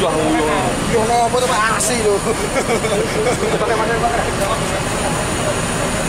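People talking close by over the steady running of an idling Mercedes-Benz coach engine.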